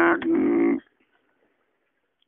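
Unaccompanied voice singing a Mường xường folk song, holding a steady note that ends under a second in, followed by a pause of near silence.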